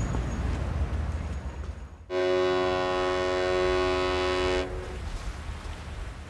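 Low, steady background rumble, then about two seconds in a single long horn blast of several tones at once, held steady for about two and a half seconds before it stops.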